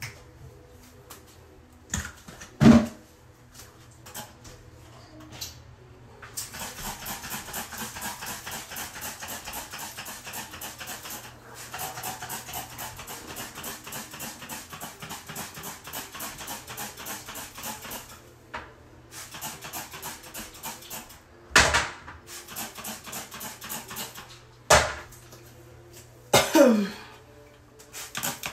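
Rapid, rhythmic scrubbing on a toilet, about five strokes a second, in long runs of several seconds. A few sharp knocks come in between: one loud knock a few seconds in, and several more near the end.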